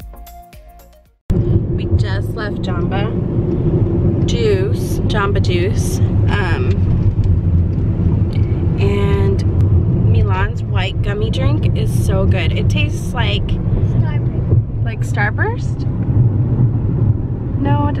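Background music fades out in the first second. Then comes the steady low rumble of a car's cabin on the move, with voices over it.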